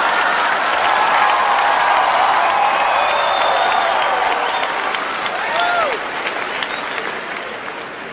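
Large theatre audience applauding and cheering, with a shout rising and falling about six seconds in; the applause dies away gradually near the end.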